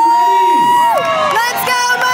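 A voice shouting in long, high-pitched drawn-out cheers: one note held for about a second that then falls away, and a second held cheer at a lower pitch starting near the end.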